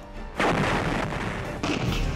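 Artillery blast about half a second in, rumbling on, with a second sharper crack near the end, over background music.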